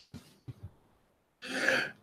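A few faint clicks, then about a second and a half in, one brief breathy throat noise from a person at a close microphone.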